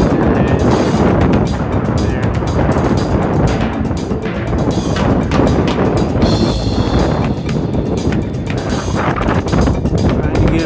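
Strong wind buffeting the phone's microphone in a loud, gusting, uneven rumble.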